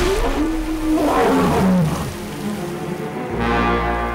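A film sound effect of a deep roar falling in pitch, accompanying a martial-arts palm strike. Sustained music comes in a little past three seconds.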